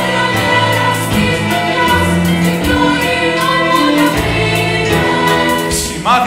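Women's choir singing sustained chords over an instrumental accompaniment, with low bass notes and a light, regular percussive tick.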